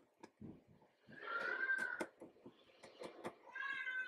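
A house cat meowing twice, two drawn-out, slightly arching meows about two seconds apart, with faint ticks of pen and plastic stencil between them.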